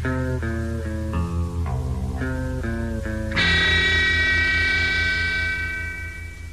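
Electric guitar playing a short run of single notes, about two or three a second, over bass. Then a final chord is struck about three seconds in and left ringing, with a pulsing low tone beneath it, as the rock song ends.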